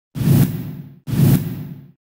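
Two identical whoosh sound effects with a deep boom underneath, each starting suddenly and fading away over about a second: the sting of a TV news logo intro.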